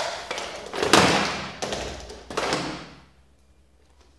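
Plastic legs and body of a 3D-printed robot dog knocking and thudding against the floor as it flails and collapses in a failed attempt to stand. The knocks come in a quick series, the loudest about a second in, and die away after about three seconds.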